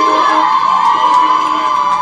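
Several women ululating together in one long, high-pitched held trill over a crowd's chatter.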